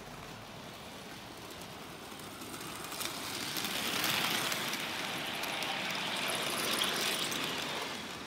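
HO scale model train of a Union Pacific 806 locomotive and freight cars running on sectional track, a steady whirring rumble of motor and wheels on rail. It grows louder from about three seconds in as the locomotive passes close by, then stays loud as the cars roll past.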